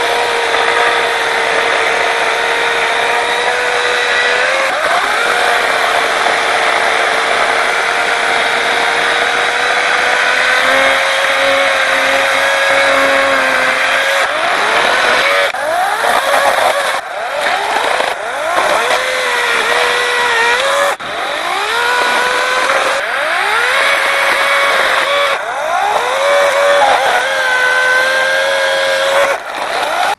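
Lynxx 40-volt brushless battery chainsaw running with a steady, high electric whine and chain noise as it cuts wood. In the second half, during limbing, its pitch dips and climbs back again and again, with short breaks in the sound.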